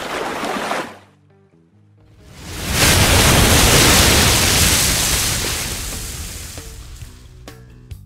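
Intro logo sting: music with a water splash effect that stops about a second in, then a loud rushing surf-like wave effect that swells up and slowly fades over several seconds, with a few music notes and sharp hits near the end.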